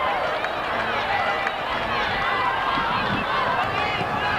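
Football-ground sound at a match: many overlapping voices of spectators and players calling and shouting, with no single clear talker.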